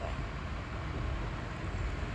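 Steady low rumble of background noise, with no distinct events.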